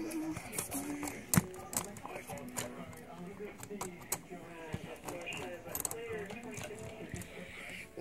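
Light clicks and knocks of a model train car being handled on metal three-rail track, with faint voices talking in the background.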